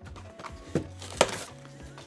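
Soft background music with two sharp knocks from cardboard packaging being handled, the louder one a little past a second in.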